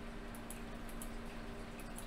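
Quiet room tone with a steady low electrical hum and a few faint computer-mouse clicks.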